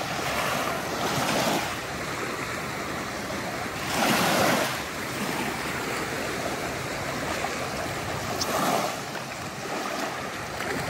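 Small waves lapping and washing up a sandy beach at the water's edge, in a few surges, the loudest about four seconds in.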